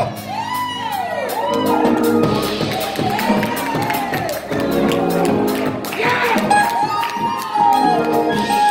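Live gospel praise music: a woman's voice through the church PA in long rising-and-falling lines over sustained keyboard chords and regular drum hits, with the congregation cheering.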